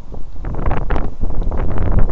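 Wind buffeting the camera's microphone in gusts, a loud, rumbling noise with no steady tone.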